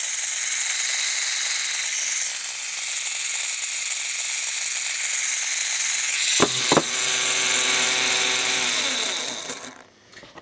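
LEGO Power Functions XL motor running under battery power: a steady electric-motor whir with the gear whine of its internal reduction gearing. There are two short clicks about six and a half seconds in. Near the end it winds down, falling in pitch, and stops.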